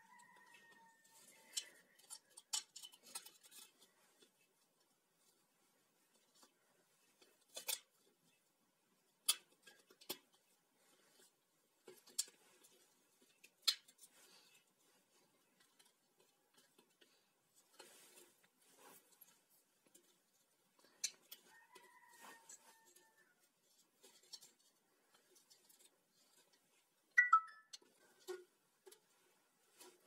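Scattered small clicks and taps of plastic and wire being handled as an angle grinder's switch and wiring are fitted back into its plastic handle housing, with a sharper click now and then, the loudest near the end. A faint short steady tone sounds at the start and again about 21 seconds in.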